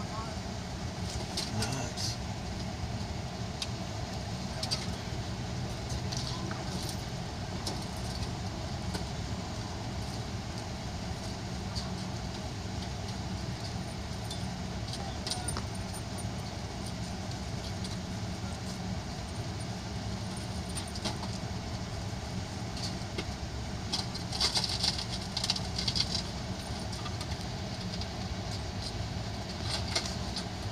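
A vehicle's engine idling steadily, heard from inside its cabin. A few short clinks near the end, like keys jangling.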